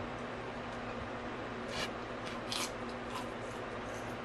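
Two crisp crunches of biting into a celery stick dipped in ranch, a little under a second apart, with chewing, over a low steady hum.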